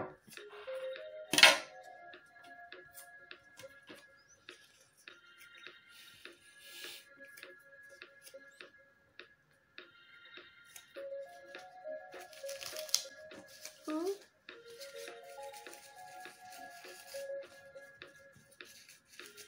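Light rustling and clicking of paper pieces being handled and pressed together by hand as a small paper cockade is assembled, with one sharp click about a second and a half in. Soft background music with held notes plays underneath.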